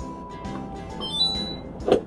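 Electronic beeps from an LG side-by-side refrigerator's touch control panel as its buttons are pressed to put it into demo (display) mode, over background music. A steady tone comes first, then a lower one, then short higher tones about a second in.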